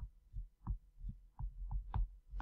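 A pen stylus tapping and stroking on a tablet as words are handwritten: a string of soft, short knocks, about seven in two seconds.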